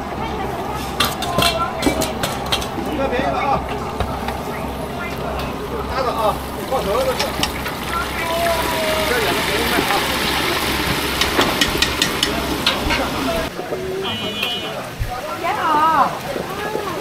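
Chicken frying in a pot of hot oil: a sizzling hiss that swells through the middle, with metal tongs clicking against the pans, over a steady low hum and the chatter of market voices. The hum cuts off near the end.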